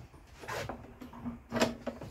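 Two short handling knocks as the steel mower handle and its bolts are moved: a lighter one about half a second in and a sharper, louder one about a second and a half in.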